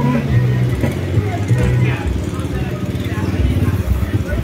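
Road traffic: cars and a motorcycle passing close by on a town street, their engines running.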